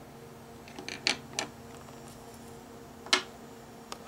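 A few short clicks and taps of pencils and drawing tools being handled and set down on the table: a couple about a second in and a sharper one near the end, over a faint steady hum.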